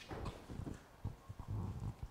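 Several soft, low thuds and knocks at irregular intervals, the handling and movement noise of a person moving about with microphones.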